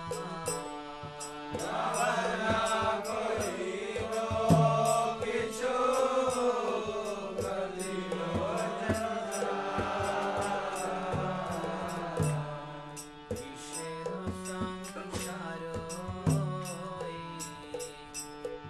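A man singing a Vaishnava devotional song in a slow chanting style, gliding between long held notes. Under the voice are steady sustained accompanying tones and a regular percussion beat. The voice drops back in the last few seconds while the accompaniment carries on.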